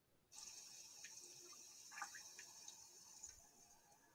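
Near silence: a faint high hiss with a few soft ticks, starting about a third of a second in, as a video's soundtrack begins.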